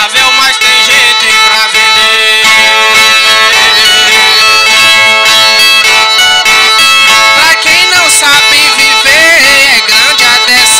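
Brazilian folk viola playing an instrumental cantoria passage, its strings ringing on in a steady drone under a wavering melody.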